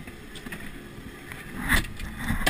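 Low, steady background noise aboard a small boat, with a short, slightly louder sound near the end.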